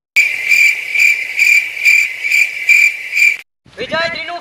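Cricket chirping sound effect, a steady high chirp pulsing about three times a second, dropped in over dead silence and cut off abruptly just before the end: the comedy 'crickets' gag for an awkward silence when nobody answers.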